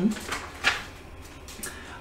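A brief papery rustle about two thirds of a second in as a page of a hardcover picture book is turned, over a faint steady low hum.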